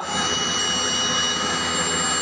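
Vibratory stress relief exciter motor running steadily at about 4,975 rpm, shaking the workpiece near its peak point with vibration acceleration holding at about 50 m/s². A steady running noise with a few faint, high, steady whining tones over it.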